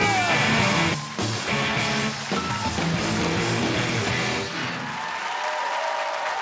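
Live rock band music led by an electric guitar. About four and a half seconds in the band thins out and audience applause takes over.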